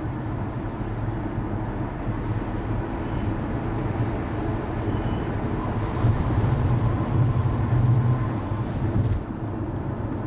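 Steady highway road and engine rumble heard from inside a moving car. It swells for about three seconds past the middle, close alongside a large truck, then drops suddenly near the end.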